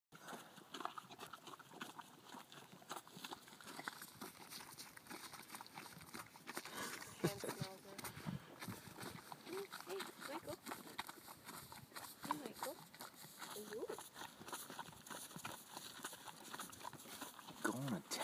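Two horses licking a salt block: a steady run of small wet clicks and smacks from their tongues and lips working the block.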